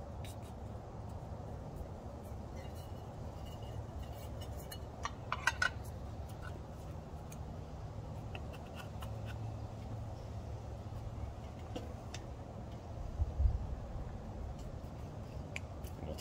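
Faint handling noises as a capacitor and its plastic cover are fitted onto an air compressor's electric motor: a few light clicks about five seconds in and a soft knock near the end, over a steady low background rumble.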